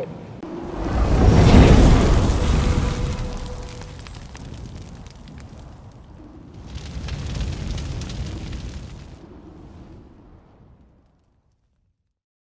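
Cinematic logo sting: a deep boom with rushing noise swells up about a second in and slowly fades, then a second, softer swell comes around seven seconds and dies away before the end.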